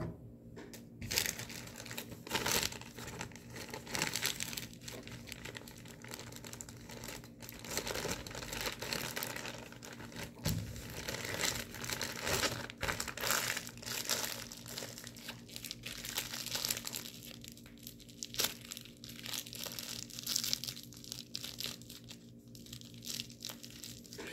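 Plastic packaging crinkling and rustling in irregular bursts, with sharp crackles, as a supplement package is handled and opened.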